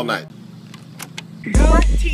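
A sung line with guitar cuts off, then a short quieter stretch with a few faint clicks. About one and a half seconds in, a loud voice starts over a very deep bass.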